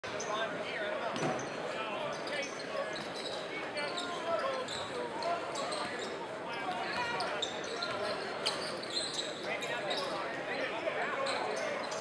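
Crowd chatter filling a high school gymnasium, with a basketball bouncing on the hardwood court as it is dribbled.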